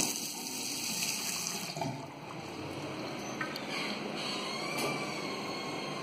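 Tap water running from a bathroom sink faucet into the washbasin and down the drain, strongest for the first couple of seconds, then fainter.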